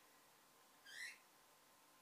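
Near silence, broken once about a second in by a short, high squeak as craft pliers squeeze a metal end cap onto spiral steel corset boning.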